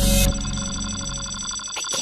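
Film-trailer music swells into a rushing sound that cuts off suddenly just after the start. A held, high ringing electronic tone follows.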